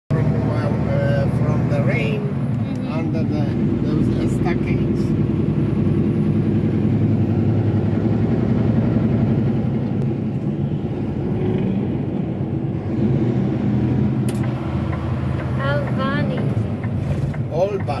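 Steady low engine drone and road noise heard from inside a vehicle's cabin while it cruises along a highway.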